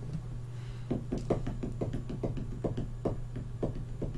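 A man's stifled laughter: a run of short, soft puffs of breath, about three or four a second.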